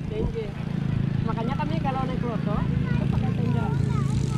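Voices of people talking a little way off, over a steady low drone.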